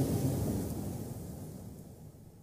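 Low rumble of a large auditorium's room noise and the reverberation after the preacher's last words, fading steadily away to silence.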